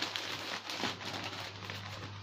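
Plastic parcel bag and clothes being handled: rustling and crinkling with a few soft ticks, over a low steady hum.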